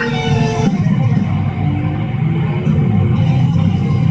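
Show-opening music with guitar. About a second in, the ringing held notes stop and a denser, low-pitched part carries on.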